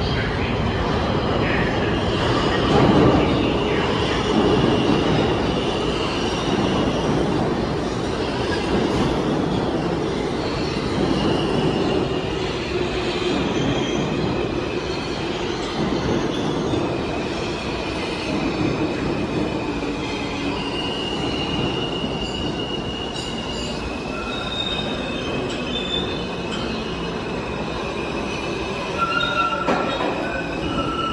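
New York City subway E train approaching through the tunnel and running into the station, with a steady rumble. From about a third of the way in, high wheel squeals sound at several different pitches that come and go.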